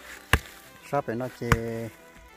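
Hand hoe blade striking hard, dry soil twice, about a second apart, with a person's voice speaking briefly between and after the strikes.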